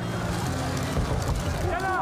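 A rushing noise that swells through the middle and fades, with a voice coming in near the end.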